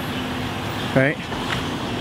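A car driving slowly through a parking lot, a steady engine and tyre noise under a man's single spoken word.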